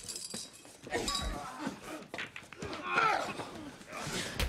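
Men grunting and crying out as they grapple in a bare-handed fight, with short voiced cries about a second in and again near three seconds, and a light clink.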